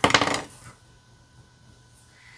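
A brief clatter of small hard plastic cosmetic pencils knocking together, lasting about half a second at the start.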